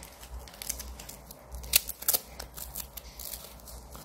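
Nylon hook-and-loop wrist strap being threaded and pulled snug around a wrist: a run of short scratchy rasps and rustles, with a sharper rasp a little under two seconds in.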